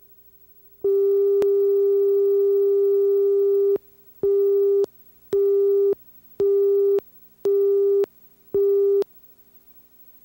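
Line-up tone on a broadcast videotape slate over colour bars: one steady electronic tone for about three seconds, then five short beeps about a second apart, counting down to the start of the programme.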